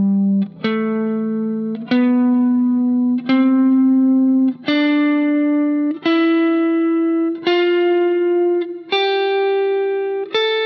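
Fender Stratocaster electric guitar playing the C major scale slowly upward, one sustained note at a time, each note rising a step above the last, about one new note every second and a half.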